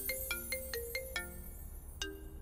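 Mobile phone ringtone: a quick tune of short pitched notes that stops about one and a half seconds in.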